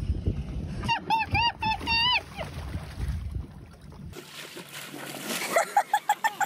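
A person's high-pitched squealing cries, four or five in quick succession. Then water splashing as a person falls off a paddleboard into shallow water, with more short cries near the end.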